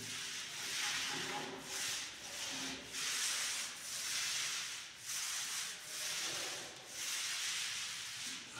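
Paint roller on a long pole rolled up and down a wall. It makes a hiss that swells and fades with each stroke, roughly once a second.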